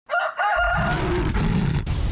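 Opening-title sound effect: two short, shrill creature-like cries with bending pitch, then a loud, low rumble that carries on.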